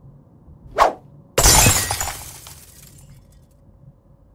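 A brief swish, then a sudden loud crash of glass shattering, its pieces tinkling as it dies away over about a second and a half.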